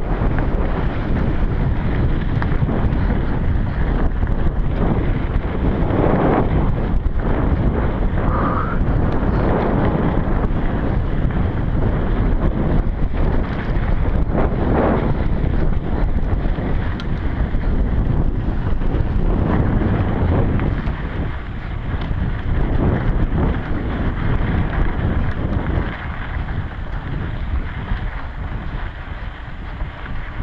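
Heavy wind buffeting on a helmet- or bike-mounted GoPro microphone while a mountain bike rides fast over dry dirt singletrack, with tyre rumble and rattle from the bike over the rough trail. The noise is steady and eases slightly in the last few seconds.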